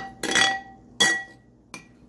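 Metal spoon clinking against a ceramic bowl as pizza sauce is stirred: three sharp clinks, each with a short ring, and a faint tap near the end.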